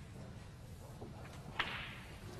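Snooker balls after a shot: a faint knock about a second in, then a sharp clack about one and a half seconds in as the black ball is potted.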